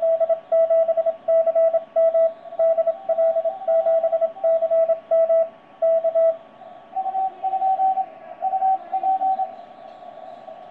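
Morse code (CW) signal from the C5DL DXpedition received on a Yaesu FT-991 transceiver on the 15 m band: a steady mid-pitched tone keyed on and off in fast dots and dashes over faint band hiss. A little past halfway the first signal stops and a second, weaker, slightly higher-pitched Morse signal keys until shortly before the end.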